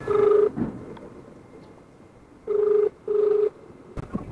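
Phone ringback tone of an outgoing call, the line ringing but not yet answered. It is a low, steady double beep: one beep at the start, then a pair of short beeps with a brief gap about two and a half seconds in.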